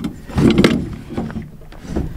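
Rustling and bumping handling noise from a phone held close and moved about, loudest about half a second in.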